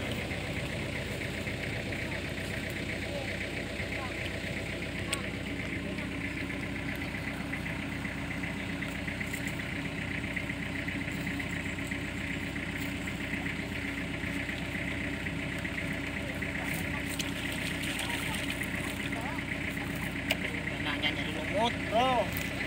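An engine running steadily at an even speed, a constant drone with a low hum that does not change.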